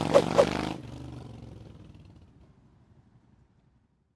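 Cruiser motorcycle engine running, with two sharp pops about a quarter second apart at the start. The sound drops away abruptly a little under a second in and fades out over the next few seconds.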